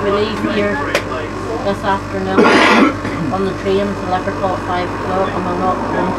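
Indistinct chatter of passengers inside a moving tram, over the tram's steady low hum. There is a sharp click about a second in, and a cough about halfway through.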